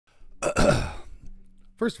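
A man's loud, voiced sigh into a close microphone, about half a second long, about half a second in.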